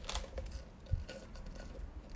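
Faint small clicks and handling noises of a plastic drink cup and straw held close to the phone while drinking, with one soft knock about a second in.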